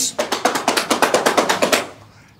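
A drum roll: rapid, even strikes, about fifteen a second, fading near the end.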